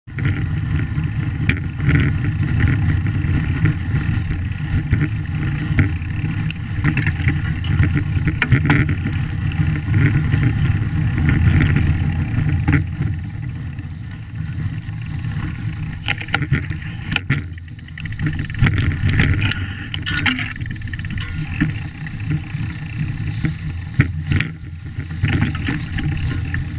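Knobby fat bike tyre rolling over a snowy, leaf-strewn dirt trail. The handlebar-mounted camera picks up a steady low rumble from the tyre and wind, with frequent clicks and knocks as the bike jolts over bumps.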